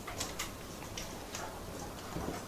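A few faint, sharp clicks or taps at uneven intervals over low room hum.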